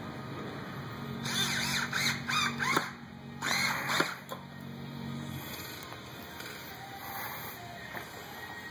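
A cordless drill driving screws into a display rack: its motor runs steadily for about four seconds, with high squealing sounds over it in two spells, the first longer.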